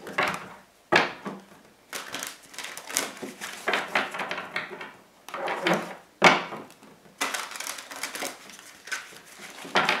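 Tarot deck being shuffled by hand: a series of papery rustles and card-on-card slaps, some with sharp starts, coming at irregular intervals.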